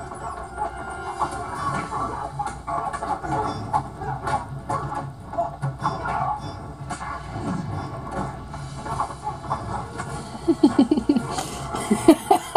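Fight-scene soundtrack from a TV speaker: an action music score with repeated sharp punch and hit impacts. A short, repeated vocal burst comes near the end.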